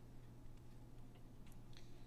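Faint, scattered clicks and taps from a digital pen writing on screen, over a steady low hum.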